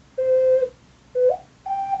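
Ocarina playing three short notes with a pure, whistle-like tone. The first is held steady for about half a second, the second starts at the same pitch and slides up, and the third sits higher, near the end.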